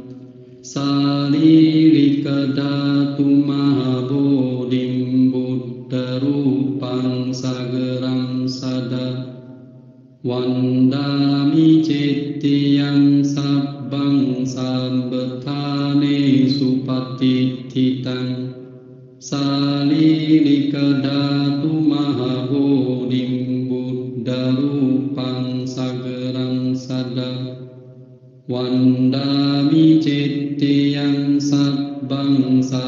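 Buddhist chanting in long melodic phrases of about nine seconds each, with a brief pause for breath between phrases, three times.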